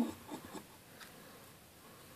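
Faint handling noise: a hand rubbing and brushing against the phone, with a few soft clicks in the first second, then a low hush.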